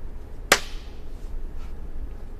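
A single sharp hand slap of a high five, about half a second in.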